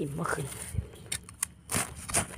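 A knife blade scraping and digging into soil and dry leaf litter, a run of short scrapes and clicks.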